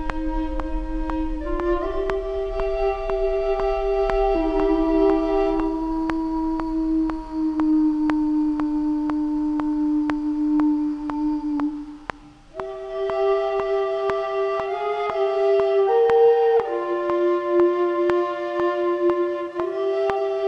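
Dark cinematic instrumental music: long held, sustained notes that shift pitch every few seconds over faint, evenly spaced ticks, with a brief drop about twelve seconds in.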